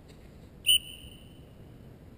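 A single blast on a dog-training whistle, a steady high note that is loud at first and then trails on much more faintly for about a second. It is the recall cue calling the dog to come in and sit at the handler's front.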